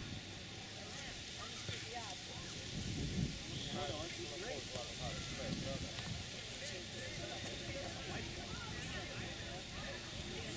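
Distant voices of players and spectators calling out across an open soccer field, over a low rumbling background noise.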